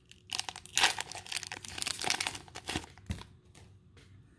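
A trading-card booster pack wrapper crinkling and tearing as it is opened by hand: a run of crackling that stops about three seconds in, ending with a sharp click.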